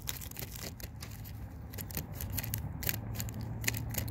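Foil Magic: The Gathering booster pack wrapper crinkling and trading cards being handled and slid apart: scattered small crackles and clicks.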